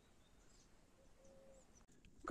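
Near silence: faint outdoor ambience with a few faint, short bird chirps.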